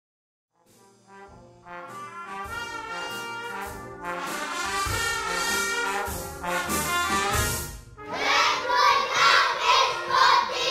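Brass band music fades in from silence and builds, with several held notes sounding together. About two seconds before the end a louder chorus of children's voices comes in.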